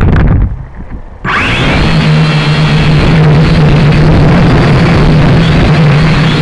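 A few knocks, then about a second in a loud, steady motor noise starts abruptly, with a low hum that wavers slightly in pitch, like an engine running.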